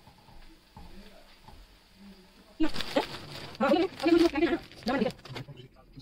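A person's voice making a few short sounds with no clear words, starting about two and a half seconds in and lasting some two and a half seconds, after a faint, quiet start.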